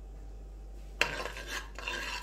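A steel ladle strikes the inside of a pressure cooker sharply about a second in, then scrapes and stirs through the tadka roasting in hot ghee and oil.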